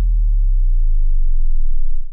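A loud, deep electronic tone that glides slowly and steadily downward in pitch, a bass-drop sound effect under an intro title card.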